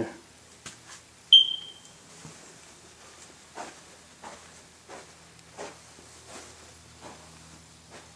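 A single sharp, high electronic beep about a second in, ringing away briefly, followed by soft footsteps about every 0.7 seconds as someone walks across the floor, over a faint low hum.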